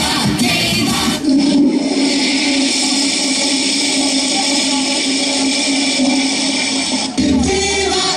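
A recorded toilet flush played as a sound effect over the stage PA, a steady rushing that cuts in about a second in, replacing the backing music, and lasts about six seconds before the music returns.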